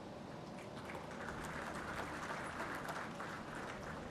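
Faint audience applause, scattered clapping that swells about a second in and eases off near the end.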